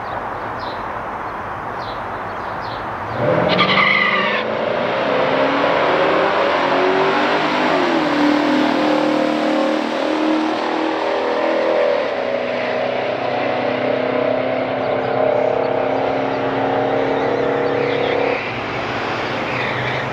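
Two V8 muscle cars, a 1971 Chevelle SS454's 454 and a 1969 Oldsmobile Cutlass's 350, launch together about three seconds in and run a quarter-mile drag race at full throttle. Engine pitch climbs, drops back at an upshift of their three-speed automatics and climbs again. The sound drops sharply near the end.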